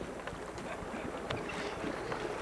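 Motorboat engine running steadily at low speed, with wind noise on the microphone.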